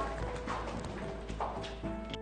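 A few footsteps knocking on a hard floor, under soft background music that comes in about half a second in.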